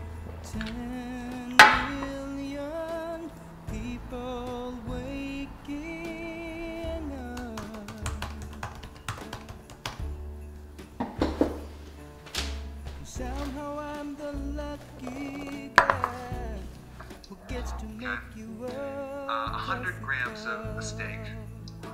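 Background music: a slow melody of wavering, vibrato notes over a steady bass, with a few sharp clicks, the loudest about one and a half seconds in.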